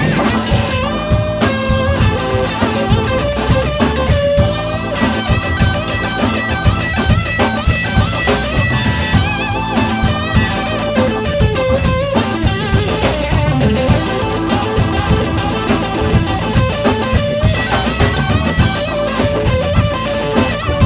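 Live rock band instrumental: a Stratocaster-style electric guitar plays a lead line with bent, gliding notes over a drum kit keeping a steady beat.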